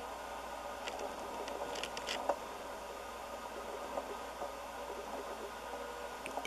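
Steady low hiss of room noise, with a few faint small clicks about one to two seconds in.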